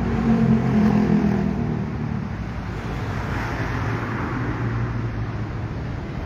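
A car driving by on the street, its engine loudest about a second in, then steady road and traffic noise.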